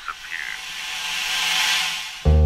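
A rising swell of hiss-like noise, a riser effect in a drum and bass mix, growing louder and brighter before easing near the end. The last echo of a spoken vocal sample trails off about half a second in.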